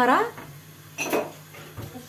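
Cutlery and dishes clinking in a short clatter about a second in, as utensils are handled in a dish-drying rack.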